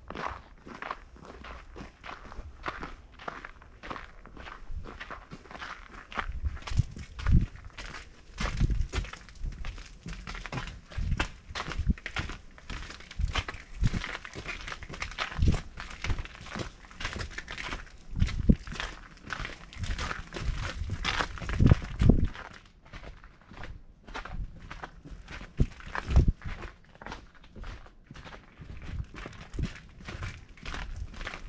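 Footsteps of people walking at a steady pace over packed snow and ice on a footbridge, with a few louder low thumps scattered through.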